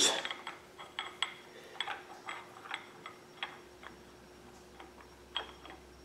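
Light metallic clicks and ticks of a Pete Jackson gear-drive timing set's steel gears being meshed and seated by hand on a small-block Chevy: a dozen or so irregular ticks, most in the first three and a half seconds, one more a little before the end.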